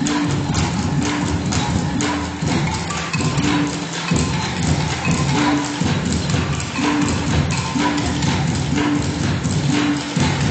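Taiwanese aboriginal wooden percussion ensemble playing a steady rhythm of sharp wooden clacks, with a short low note recurring about once a second.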